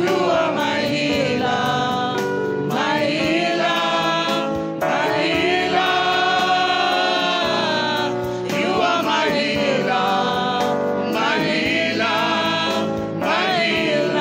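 Live gospel worship song: a woman lead singer with a small group of backing singers, over steady instrumental accompaniment, sung in long phrases with held notes.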